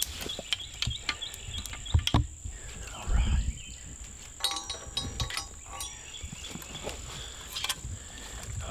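Irregular clicks, knocks and a few heavier thumps as a compound bow is unhooked from the metal frame of a tree stand and handled. A steady high insect drone runs underneath.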